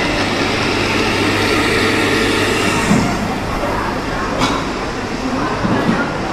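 Steady ambience of a busy indoor food court: a constant low hum with crowd chatter in the background, and one sharp click a little past halfway.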